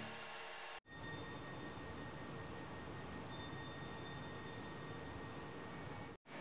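Background music fading out, then after an abrupt cut a faint, steady hiss with a thin high-pitched whine: room tone of the recording.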